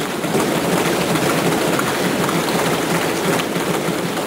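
Lawmakers in a packed parliamentary chamber applauding by thumping their desks: a dense, steady patter of many hands that stops near the end.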